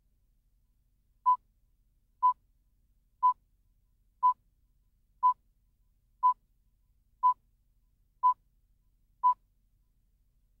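Countdown beeps of a broadcast tape leader: nine short beeps, all at one pitch, one each second, marking the seconds counted down to the start of the programme.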